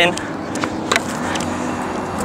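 Tennis rally on a hard court: a few faint knocks about a second in, from ball strikes and footsteps, over a steady outdoor background noise.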